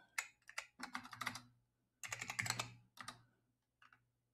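Computer keyboard keys pressed in several quick runs of clicks, with short pauses between them: keystrokes editing a terminal command line.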